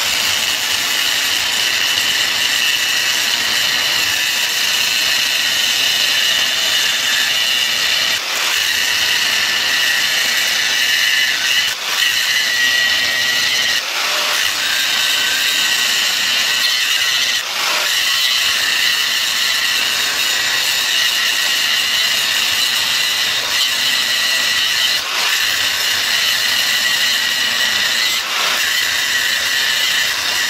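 Angle grinder with a cutting disc cutting into the steel casing of a fridge compressor: a steady high-pitched whine that runs on continuously, with a few brief dips as the disc's load eases.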